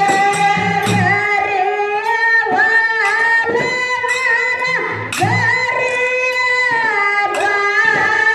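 A young woman singing a Kannada dollina pada (folk devotional song) into a microphone, holding long wavering notes, with instrumental and low percussion accompaniment.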